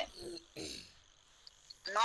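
A brief faint voice, then a lull broken by two small ticks, with speech starting again near the end.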